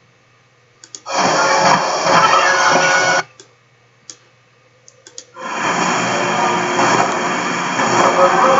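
The sound track of a trampoline-park video clip playing back sped up in a video editor's preview: a dense, loud jumble of noise, heard twice, from about a second in for two seconds and again from about five seconds in. Faint clicks come in the near-silent gaps.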